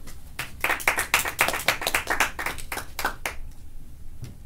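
Hands clapping in a short round of applause: crisp, evenly spaced claps about six a second, starting about half a second in and stopping a little past three seconds.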